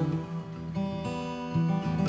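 Acoustic guitar fingerpicked alone, a few plucked notes ringing out quietly between sung lines.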